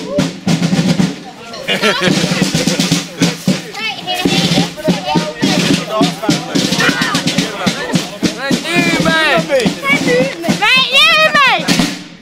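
Marching snare drums beaten in a fast, steady run of strokes, with several voices calling and whooping over them, loudest near the end.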